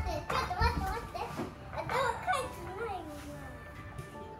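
A young child's voice calling out excitedly during pretend play, over faint background music, with two low thumps near the start.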